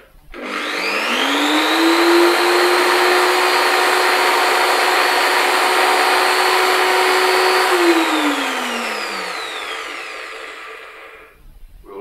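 Corded electric drill running with no load: the motor whine rises quickly as it spins up, holds steady for about six seconds, then falls away as the trigger is released and the drill winds down to a stop.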